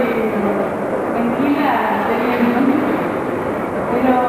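A young woman speaking into a handheld microphone, her voice carried over steady background noise.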